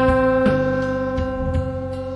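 A live blues-rock band holding one long sustained instrument note that slowly fades, with a few light drum taps behind it.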